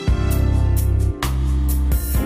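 Instrumental backing of a gospel song: deep bass notes under a pitched accompaniment, with drum hits near the start, just past a second in when the bass changes note, and near the end.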